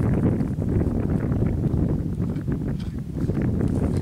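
Wind buffeting the microphone: a steady low rumble with a rough, fluttering texture.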